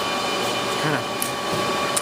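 Steady whirring machine noise with several steady tones running through it, like running fans: background noise from equipment in the workshop.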